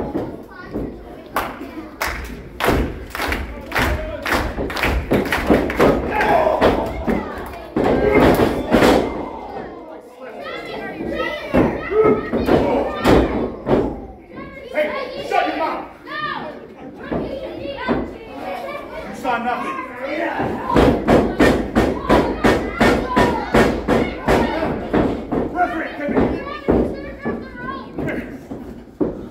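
Wrestling ring impacts: repeated thuds and slaps as bodies hit the canvas, with spectators' voices, children's among them, shouting over them. Near the end there is a quick, even run of sharp hits.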